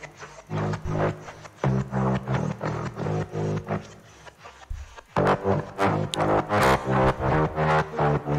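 A soloed synth bass texture from a happy hardcore remix playing back from the DAW: pitched bass notes in short rhythmic chopped pulses. It drops away about four seconds in and comes back about a second later.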